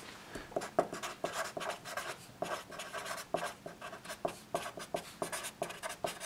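Black felt-tip marker writing on paper: a steady run of short, quick strokes as words are handwritten.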